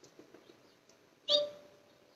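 A single short, sharp bird chirp just over a second in, against an otherwise quiet background.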